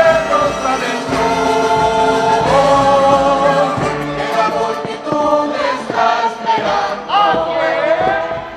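Choir singing a hymn in chorus, with long held notes.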